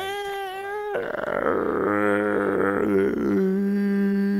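A man's voice making long, drawn-out vocal sounds: a higher held note for about a second, then a lower note held steady for the last couple of seconds. It is a dumbfounded, mocking "daah" of bewilderment.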